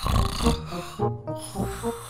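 Cartoon snoring sound effect of a sleeping character: a breathy snore at the start, over light plucked background music.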